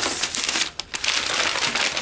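Tissue paper crinkling and rustling as it is pulled off a candle, with a short lull a little before one second in.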